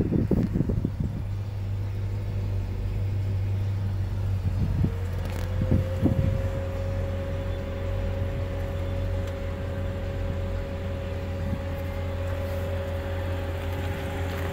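Steady low hum of the 2008 Hummer H2 running, heard inside the cabin. A higher steady whine rises into place about five seconds in and holds, with a few light clicks around then.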